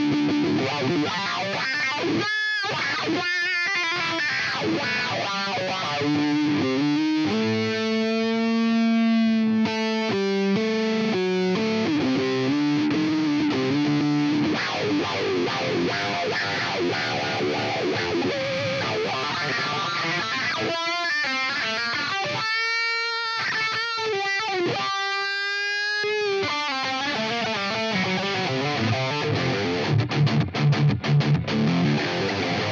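Distorted electric guitar played through a Line 6 Helix Floor amp-and-effects modeller, held notes and chords, with a wah effect swept by a Mission Engineering SP1-L6H expression pedal. The tone shifts as the pedal rocks, most clearly in a few long notes near the end.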